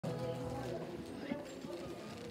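Acoustic guitar strummed, a chord ringing and fading over about the first second, then softer playing.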